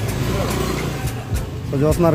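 Street noise in a crowded market lane: the engine of a motor scooter running close by, a steady low rumble, under people's voices and a few clicks. A man's voice comes in near the end.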